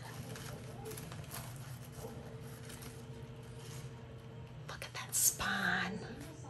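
Soft rustling and light handling of paper and lace packaging over a faint steady hum, with a few small clicks, and a breathy, whispered voice near the end.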